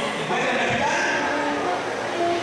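A man's voice speaking, with drawn-out, held syllables.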